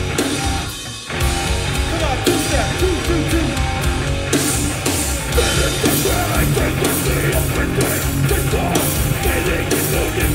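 Live hardcore band playing heavy distorted guitar, bass and drums, with vocals shouted into a microphone. The music drops out briefly about a second in, then the full band comes back in.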